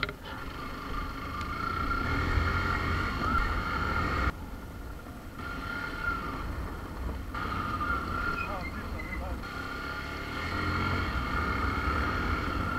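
Motorcycle engine running at low speed, with a steady whine over a low rumble. The sound jumps abruptly about four times where short riding shots are cut together.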